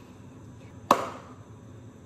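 A single sharp smack about a second in, with a short ringing tail.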